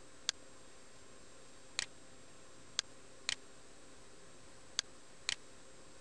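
Computer mouse buttons clicking: a single click, then a quick double click, a pattern that comes three times.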